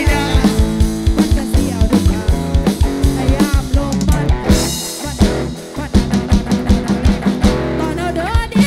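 Live band playing an upbeat instrumental passage: a steady drum-kit beat under bass and a bending lead melody line. About halfway a cymbal crash rings out and the beat drops back for a moment, then comes in again.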